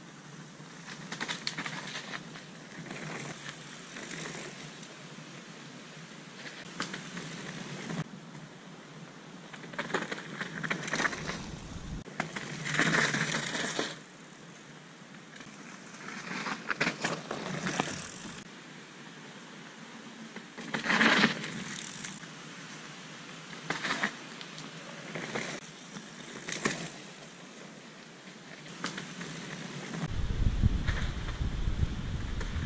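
Mountain bike riding past on a dirt trail: tyres rolling and crackling over dirt, roots and fallen leaves, swelling in several louder passes as the bike comes close. The loudest passes come about halfway through and again about two-thirds of the way through.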